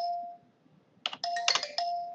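A few quick computer keystrokes about a second in, typing digits into a field. An electronic ringtone-like tone sounds on and off underneath, at the start and again near the end.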